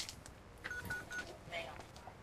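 Three short electronic beeps at one steady pitch in quick succession, about a quarter second apart.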